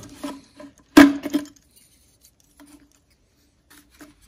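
Thin sheet-metal air-swirl insert clattering and clinking against the car's air-intake hose as it is worked out of the pipe. There is one sharp metallic clatter about a second in, a few smaller clicks just after, and then only faint ticks.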